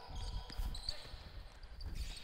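Live basketball play on a hardwood gym court: a basketball bouncing and players' footsteps make low, irregular thuds.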